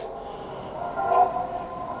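Faint, steady background noise of a jail dayroom, with a few muffled distant voices swelling briefly about a second in.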